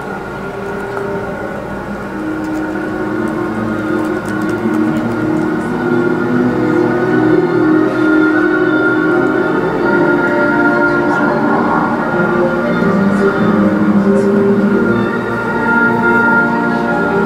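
Western classical music from an outdoor sound-and-light show, recorded from an apartment window and played back in the room: sustained, steady tones that swell louder over the first few seconds.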